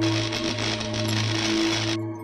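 Logo intro music: a steady low synthesized drone with a loud hissing sound effect layered over it.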